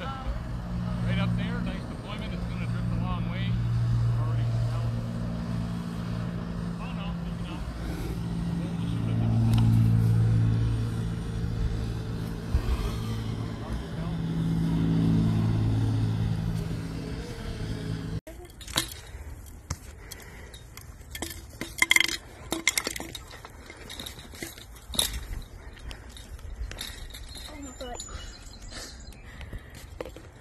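Steady hum of a camera drone's motors and propellers, its pitch shifting in steps as it flies. About eighteen seconds in it cuts off suddenly to a much quieter background with scattered sharp clicks and clinks.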